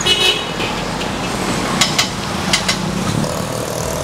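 Steady road traffic noise with a short, high horn toot at the very start and a few sharp clicks around the middle.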